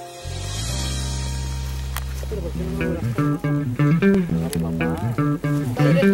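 Background music: a held low chord, then about three seconds in a plucked guitar and bass groove comes in.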